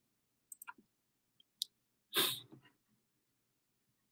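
Near silence between spoken passages, broken by a few faint mouth clicks and then one short, soft breath about two seconds in.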